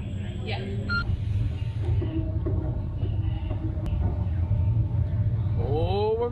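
Steady low rumble of a children's roller coaster train rolling out of its station along the track, growing louder about a second in, with a single sharp click near the middle.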